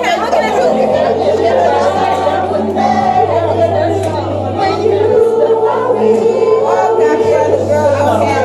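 Several voices singing together over a steady low bass note, loud and continuous.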